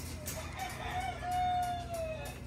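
A rooster crowing once, its call ending in a long held note that falls off at the end.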